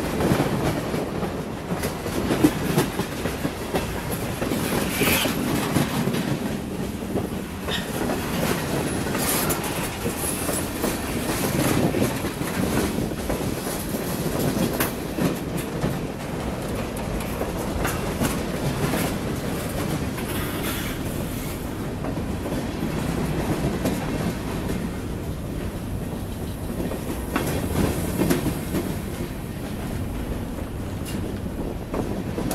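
Freight train boxcars and covered hoppers rolling past close by: a steady rumble of steel wheels on rail, with clickety-clack and scattered knocks as the wheels cross rail joints.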